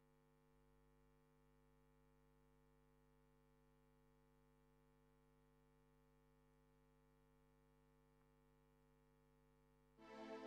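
Near silence: only a faint, steady hum made of several constant tones.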